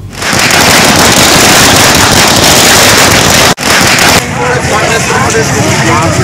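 A loud, dense crackling that lasts about four seconds, with a split-second break shortly before it stops. It then gives way to a street crowd talking.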